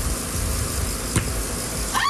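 A steady rushing noise with a low rumble, and a single sharp knock about a second in: a ball dropped onto a concrete patio hitting the ground.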